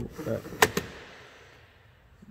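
Rear side-window pull-up sunshade being unhooked and let retract into the door panel: two sharp clicks in quick succession, the first the louder, then a short fading rustle.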